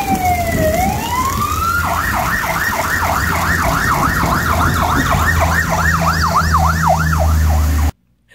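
Emergency vehicle siren: a long falling wail that turns and rises, then switches about two seconds in to a fast yelp of about three to four sweeps a second, over a low steady rumble. It cuts off suddenly at the end.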